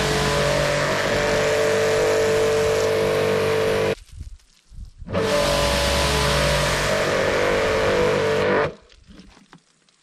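Kärcher electric pressure washer running with its jet spraying, twice for about four seconds each: a steady motor and pump hum under the hiss of the water, cutting off abruptly in between and near the end.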